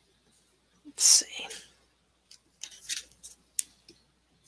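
Indistinct whispering in two short stretches, with a sharp click a little before the end.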